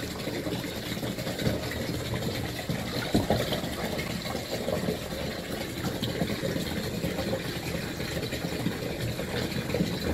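Bathwater splashing and sloshing as a hand rubs and scrubs a dog's soaked legs in a tub of soapy water, with a steady wash of water noise throughout.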